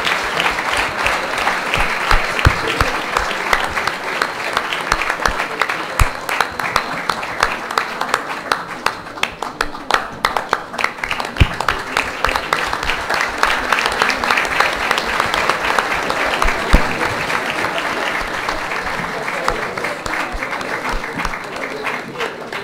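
Audience applause, a dense patter of many hands clapping that thins out a little near the end.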